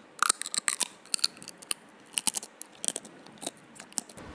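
Crab shell being cracked and crunched while eating: an irregular run of sharp cracks and crackles that starts suddenly just after the opening and goes on in quick bunches.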